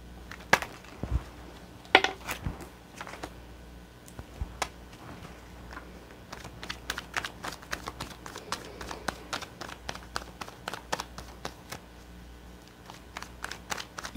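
Tarot cards being shuffled by hand: a run of quick flicks and taps of card edges. A few louder snaps come in the first couple of seconds, and the flicks grow faster and denser in the second half.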